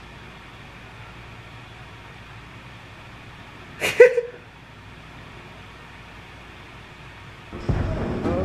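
Low steady room hum, broken about halfway by one short vocal sound from a man. Music starts up loudly just before the end.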